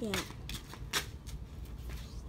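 Bundled water lily stems being handled: a few short sharp clicks and light rustles, the loudest about a second in, over a steady low hum.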